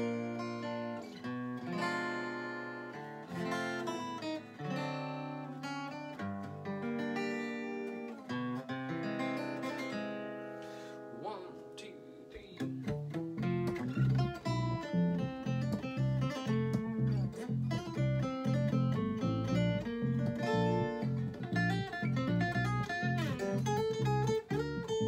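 Instrumental intro of a country-style song: an acoustic guitar picking melody notes, with an electric bass underneath. About halfway through, the playing gets fuller and louder, with deep bass notes.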